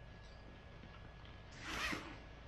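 A short zip-like rasp, about half a second long near the end, as the wrapped vinyl bounce house's cover and straps are unfastened.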